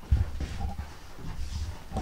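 Camera microphone rubbing and bumping against a shirt as it is carried, with a sharp bump just after the start and low rumbling after, and a dog whining faintly in the middle.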